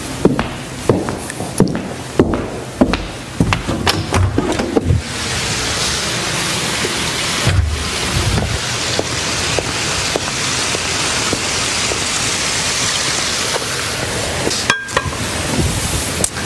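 A run of sharp clicks and knocks like footsteps on a hard floor. About five seconds in, a steady rushing noise of running water from a garden pond waterfall takes over.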